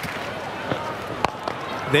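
Cricket ground ambience picked up by the stump microphone, with a single sharp crack of bat on ball a little past halfway and a few fainter knocks around it.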